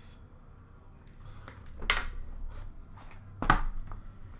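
Hands opening a cardboard trading-card box: soft handling noise with two short, sharp scraping or tearing sounds, about two seconds in and again near the end.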